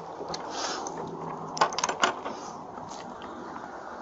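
Car keys clinking as they are set down on a van's hood: a cluster of sharp clicks about halfway through, over a steady hiss.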